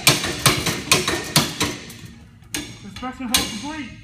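Repeated sharp strikes of the pole on a FireSled ceiling-pull training rig, about two a second, stopping about two seconds in, then one more strike. A voice is heard briefly near the end.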